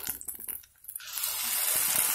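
Hot oil sizzling as ginger-garlic paste drops into a pan of frying onions and green capsicum. The hiss starts suddenly about a second in and holds steady, after a few light clicks.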